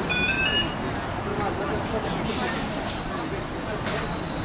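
Busy city-street sound: traffic with a city bus passing close, and people talking nearby. A quick run of high electronic beeps sounds at the very start.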